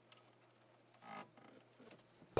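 Near silence: room tone, with one faint brief sound about a second in.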